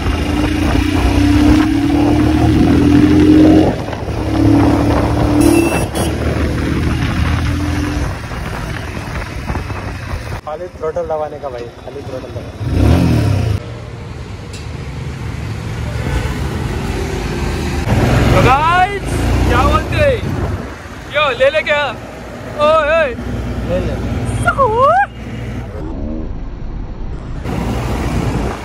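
Royal Enfield Himalayan's single-cylinder engine running under way, with road and traffic noise, for the first several seconds. Later, voices with rising and falling pitch come over quieter engine and road noise.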